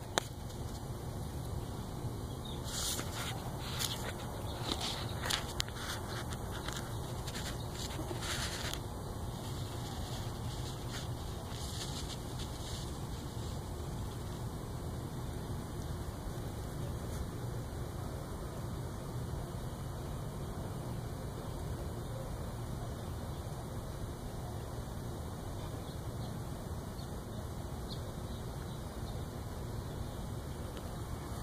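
Steady low outdoor background rumble, with a run of brief rustles and scrapes in the first nine seconds or so and a few more a little later, then only the steady background.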